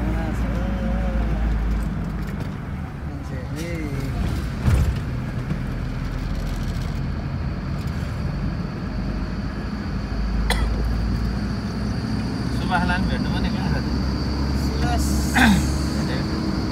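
Car engine and road noise heard from inside the cabin while driving, a steady low rumble with a few brief knocks, the loudest about five seconds in and again near the end.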